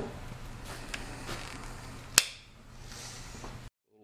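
Wire cutters snipping through the LED lamp's pigtail wire: one sharp click about two seconds in, the loudest sound, among faint handling clicks over a steady low hum. The sound cuts off suddenly near the end.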